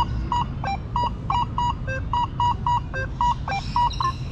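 Quest V80 metal detector giving a jumpy target tone as its coil sweeps the ground. It is a rapid run of short beeps, mostly at one mid pitch with a few higher and lower ones mixed in, signalling a buried target.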